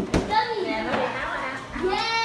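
People talking, one voice after another, with a single short knock at the very start.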